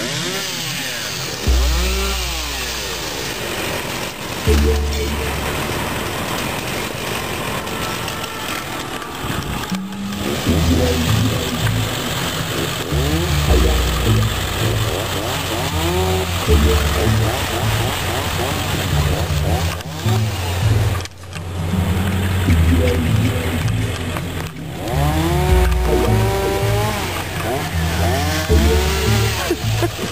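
Chainsaws cutting fallen trees, their engines revving up and falling back again and again, over a low rumble.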